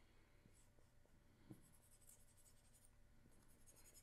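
Very faint dry-erase marker scratching on a handheld whiteboard in short drawing strokes, most of them in the second half, with a light tap about one and a half seconds in.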